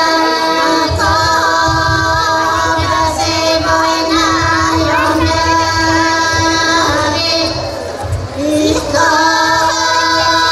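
Women's folk group singing a Pomak polyphonic song a cappella: a steady held drone under a higher, ornamented melody line. The voices break off briefly about eight seconds in and come back together a second later.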